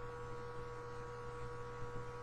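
Steady electrical hum made of several fixed tones, unchanging throughout, with no other distinct sound standing out.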